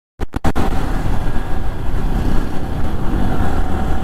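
Riding noise from a Yamaha R15 V3 sport motorcycle at a steady cruising speed of about 68 km/h: steady wind rush on the microphone over the single-cylinder engine and tyre noise. The sound drops out for about half a second at the very start.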